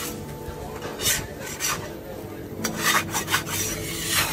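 Metal spatula scraping across a flat steel griddle in short rasping strokes, once about a second in and then several in quick succession near the end, as an egg-topped flatbread is loosened and flipped.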